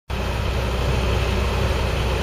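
Steady low engine and road rumble inside the cab of a moving tow truck.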